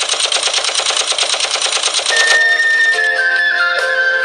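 Machine-gun fire sound effect: a rapid, evenly spaced stream of shots. About two seconds in, it cuts off and music begins, led by a sustained wind-instrument melody.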